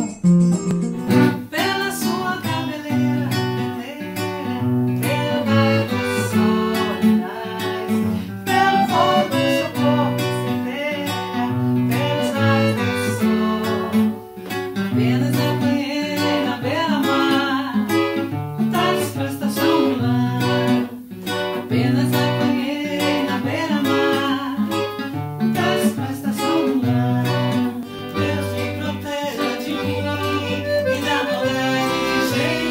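Forró medley played on a nylon-string acoustic guitar and an accordion, with a woman singing over the rhythmic guitar accompaniment.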